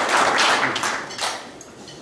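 Audience applause dying away, thinning to a few scattered claps and fading out about a second and a half in.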